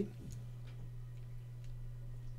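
Faint, scattered light clicks over a steady low hum.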